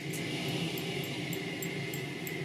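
A man's low, steady vocal drone into a microphone, with light jingling ticks about three times a second from a shaken stick rattle hung with pendants.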